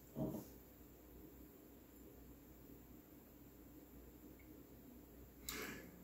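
Near silence with a faint room tone; a faint short sound just after the start, and a brief airy sniff or inhale near the end.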